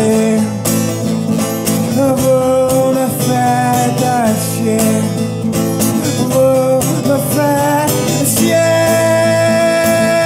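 Strummed acoustic guitar with a man singing. Near the end he holds one long note.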